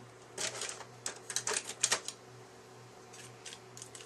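Cardstock paper being handled and pressed together, making a quick run of small crackles and clicks over the first two seconds, then a few fainter ones near the end.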